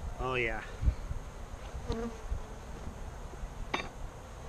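Saskatraz honeybees buzzing around an open hive, with a bee passing close by about two seconds in. One sharp click comes near the end.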